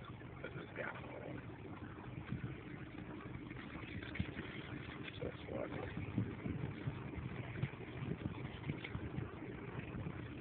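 Steady low rumble with scattered faint clicks and rustling.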